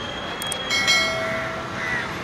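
Steady background noise at a busy bus stand. Partway through come two quick clicks, then a ringing multi-tone chime that lasts about a second.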